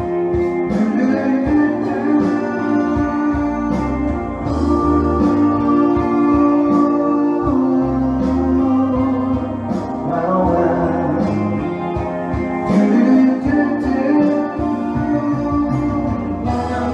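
A man singing live into a handheld microphone over a pop backing track with guitar, the music running without a break.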